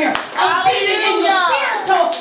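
Hand clapping at the start, then a loud, drawn-out wordless vocal cry that wavers up and down in pitch.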